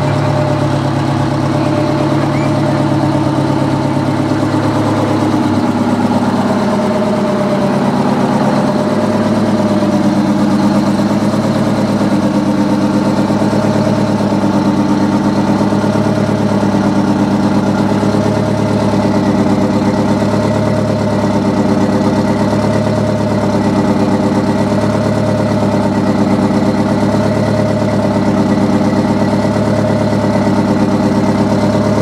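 Turbocharged Detroit Diesel 8V71T two-stroke V8 diesel idling steadily, its tone shifting about eight seconds in.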